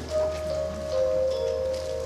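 Soft background music of held keyboard notes: a sustained chord, with the lower note stepping down about two-thirds of the way through.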